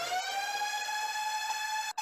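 A siren-like tone that sweeps up in pitch and then holds one steady note, with a couple of brief dropouts near the end.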